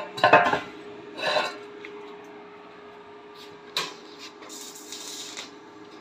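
Short metal clatters, scrapes and a sharp knock as a welded metal charge-air cooler housing is handled and set down, over a steady low hum.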